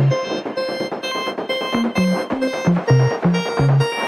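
Background music with a steady beat, a repeating bass line and held synth-like notes.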